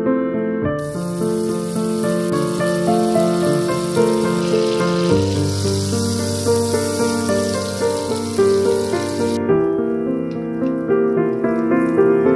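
Butter sizzling and foaming as it melts in a hot frying pan, a steady hiss that starts about a second in and stops abruptly near the nine-second mark, over gentle piano background music.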